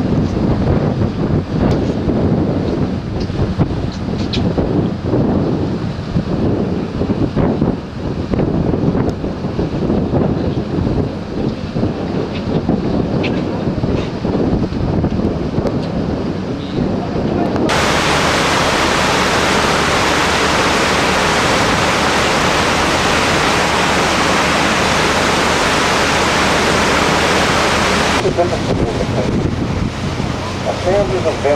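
Wind buffeting the microphone aboard a cruise boat, over the low steady rumble of the boat's engine. About eighteen seconds in, a loud, even hiss starts suddenly and cuts off about ten seconds later.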